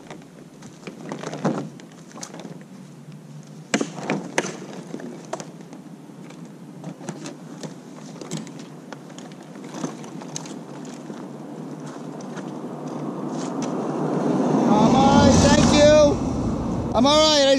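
Knocks and clatter of a tipped-over, loaded recumbent trike being lifted and set back on its wheels. Near the end a car approaches on the road and grows loud as it passes.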